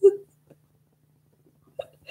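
A woman's laugh ending with a last short voiced pulse, then a pause with a faint steady hum, and a brief vocal sound near the end.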